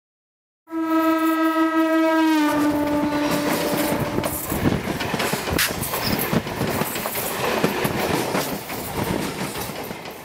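Train horn sounding one long held note that drops slightly in pitch and fades out over a few seconds, followed by the noise of a train running on the track, with irregular clicks and clatter.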